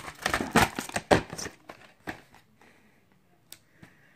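Plastic VHS clamshell case and cassette being handled: a quick run of clicks and rattles in the first second and a half, tailing off, then two faint clicks near the end.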